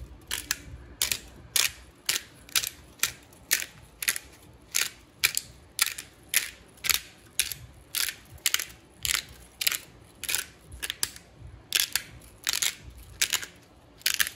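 Disposable black peppercorn grinder being twisted by hand, its plastic grinding cap crunching peppercorns in a steady run of short grinds, about two a second.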